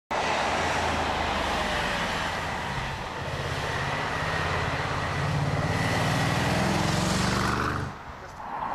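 BMW X5 SUV driving, its engine note climbing slowly in pitch from about three seconds in as it gathers speed, over road and tyre noise with a faint steady high whine. The sound cuts off abruptly near the end.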